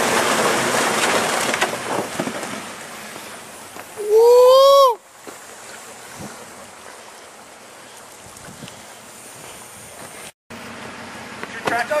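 Ford Raptor pickup's tyres spinning in a deep mud-and-water puddle, a loud splashing rush that fades after about two seconds. About four seconds in comes a person's loud drawn-out yell that rises and falls in pitch, lasting about a second.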